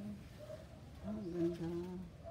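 A person humming a short "hmm" in the last second, the pitch rising and then held steady.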